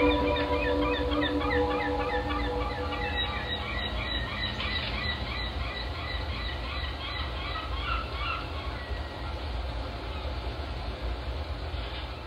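A rapid series of chirping calls, several a second, fading out over about nine seconds above a steady low rumble.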